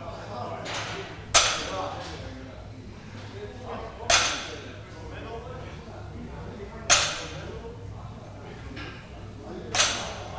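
Loaded barbell set down on the floor four times, about every three seconds, during a set of deadlift reps: each touchdown is a sharp clank of the plates with a short ring after it.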